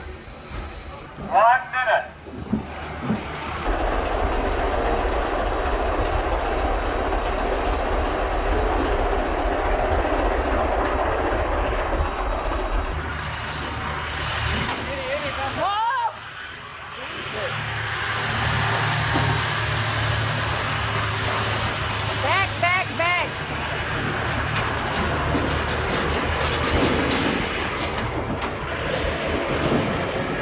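Diesel tractor-trailer livestock hauler running close by, a steady engine rumble with a short dip about halfway. A few brief pitched calls ring out over it.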